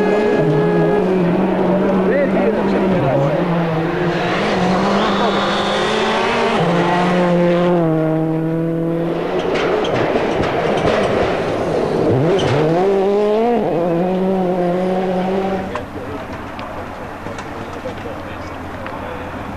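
Peugeot 206 World Rally Car engines at full throttle on gravel stages, the note stepping in pitch through gear changes. The revs rise sharply about twelve seconds in, and the sound drops off just before the end.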